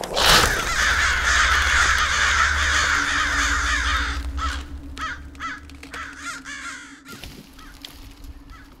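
A sudden loud burst of many crows cawing together, dense for about four seconds over a low rumble, then thinning into separate caws that fade. A steady low tone sets in about three seconds in.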